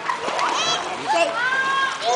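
Children's voices calling out over water splashing in a swimming pool, with one long, high call about a second in.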